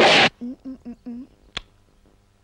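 A loud burst of noise right at the start, then four short pitched vocal sounds from a man in quick succession, and a single sharp click about a second and a half in.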